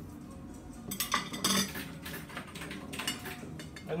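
Metal knife scraping and clinking against a ceramic plate while oil varnish is stirred and mixed: a run of short scrapes and taps starting about a second in.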